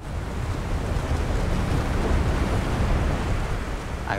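Slab avalanche pouring down a mountainside: a steady deep rumble with the rushing hiss of the snow and powder cloud.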